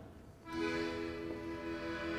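A live band begins the accompaniment to a song: after a brief hush, a single sustained chord of several notes starts about half a second in and holds steady.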